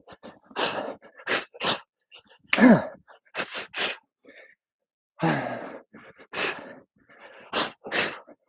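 A man's sharp, hissing exhalations timed to his punches, knees and kicks during a kickboxing combination: about a dozen short bursts of breath, with a voiced grunt that falls in pitch about two and a half seconds in.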